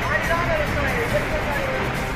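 A steady rush of floodwater and heavy rain, picked up by a phone, with people's voices calling out over it.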